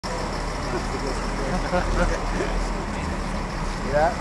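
Bus engine idling, a steady low rumble, with people talking faintly and a laugh about two seconds in.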